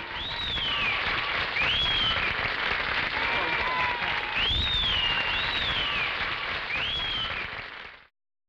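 Audience applauding and cheering, with several high whistles that rise and fall, fading out near the end.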